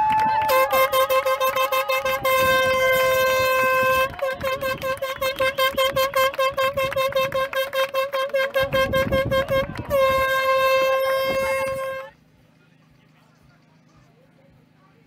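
Hand-held air horn blown over a clapping, cheering crowd: one long blast, then a quick run of short toots, then another long blast. It cuts off suddenly about twelve seconds in, leaving only a faint hum.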